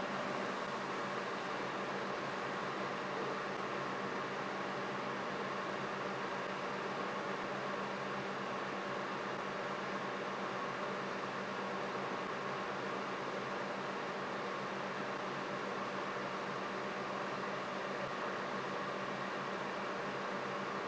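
Steady hum and hiss of running equipment, even and unchanging throughout.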